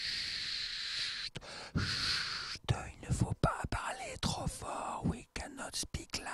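A man shushing: two long "shh" sounds, one in the first second and one about two seconds in, then soft whispering.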